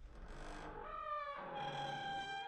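Intro sound effect: a held, pitched tone that slides in pitch about a second in, then settles on a steady note.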